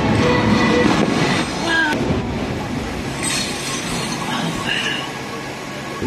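Fireworks display: dense crackle with short whistles gliding up and down in pitch, over the voices of a watching crowd, easing off a little in the second half.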